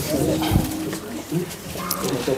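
Indistinct low voices murmuring, with one short low thump about half a second in.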